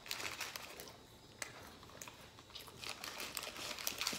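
Paper burger wrapper crinkling in the hands, with quiet close-up chewing of a cheeseburger; the crinkles come as a scatter of small crackles, thickest at the start and again past the middle.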